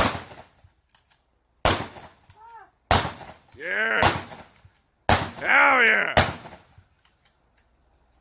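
Five handgun shots, spaced one to two seconds apart, each a sharp crack with a short echo.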